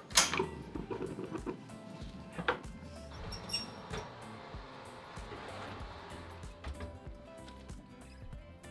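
Soft background music, with a couple of light knocks as a lidded cast-iron casserole is lifted and set into an oven, the first just after the start and the second about two and a half seconds in.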